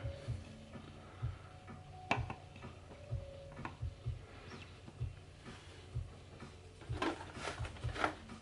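Plastic sprouter trays being handled and stacked: scattered light clicks and taps, with a sharp click about two seconds in and a quick run of knocks near the end, among soft irregular thumps.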